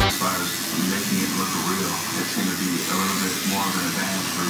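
Electric tattoo machine running with a steady hissing buzz, under faint, indistinct voices.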